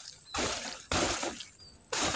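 Dry banana leaves rustling and crackling as they are grabbed and pulled at the plant's trunk, in two short bursts in the first second or so.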